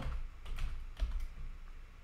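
Typing on a computer keyboard: a handful of separate keystrokes, spread out unevenly.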